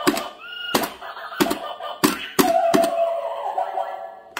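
Plastic toy hammer striking the pop-up moles of a battery-powered Whac-A-Mole mini arcade game: about six sharp hits in the first three seconds, each scored. Short electronic chirps come from the toy early on, and a steady electronic tone holds through the last second or so.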